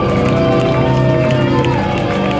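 Live rock band playing loud amplified music, with guitar and a steady beat, and long held notes that slide in pitch.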